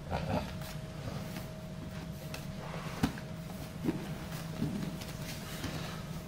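Steady room hum with soft rustling of gi fabric and bodies shifting on a grappling mat, as two jiu-jitsu players change position; a few short soft thumps come around the middle.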